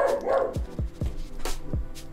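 A dog barks once at the start. Background music with a steady kick-drum beat, about four beats a second, runs under it.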